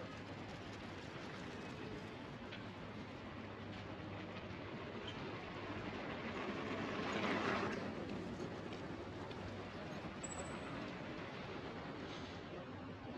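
Steady open-air city background with a small motorbike passing close, swelling to its loudest about seven seconds in and then fading away.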